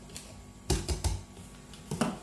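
Plastic cocktail shaker's lid being twisted off and lifted away, a few sharp plastic clicks and knocks.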